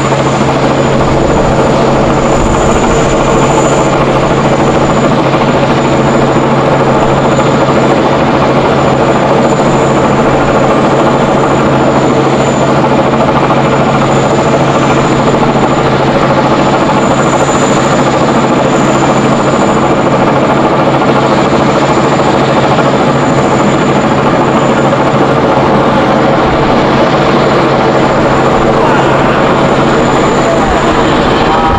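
Jet airliner engines idling as a Boeing 777-300ER taxis: a loud, steady drone with a constant high whine above it.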